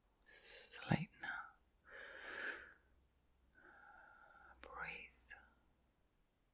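A woman whispering softly in three short breathy phrases, with a sharp click about a second in.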